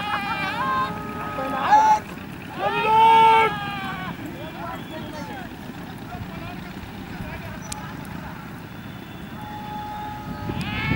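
People's voices calling out loudly in the first few seconds, the longest and loudest call about three seconds in, over a steady outdoor noise.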